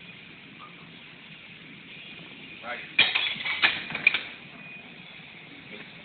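A heavily loaded barbell with large iron plates is set back into the bench press rack: a loud metal clank about halfway through, then two more clanks with the plates rattling and ringing over about a second. This marks the end of the final rep of a 650 lb bench press.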